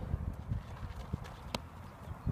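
Footsteps thudding on grass and infield dirt, about two or three a second, with one sharp click about a second and a half in.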